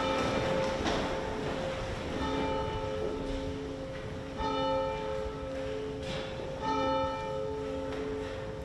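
Church bell tolling: a struck note about every two seconds that rings on between strokes.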